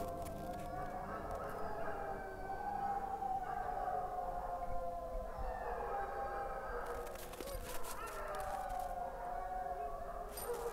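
A chorus of sled dogs howling, many long, wavering calls overlapping and sliding up and down in pitch, with a few sharp yips near the end.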